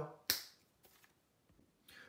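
A single sharp click about a third of a second in, then near silence with faint room tone.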